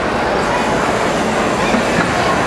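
Steady, loud din of a crowded gymnasium, with many voices blurred together into one constant noise.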